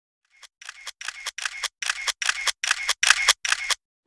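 Camera shutter clicks, about nine in quick even succession, each a double click, faint at first and growing louder.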